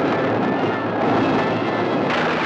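A loud, steady roar of sound effects on an old horror film trailer's soundtrack. It begins abruptly just before the title card appears and changes texture as the card comes up.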